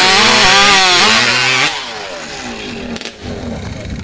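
Modified racing chainsaw (hot saw) at full throttle cutting through a log, its pitch sagging and recovering under load. About halfway through it is shut off and winds down, falling in pitch.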